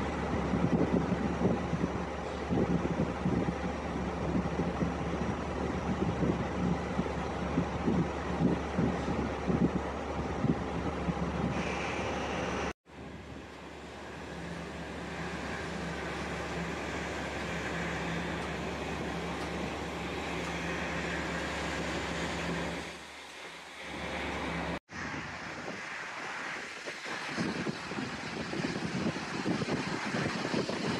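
Offshore rig deck noise: a steady machinery hum under rough noise. About thirteen seconds in, a cut to an even rushing from a well-test burner flaring behind a sea-water spray curtain. After another cut near the end, the flare burns with wind gusting on the microphone.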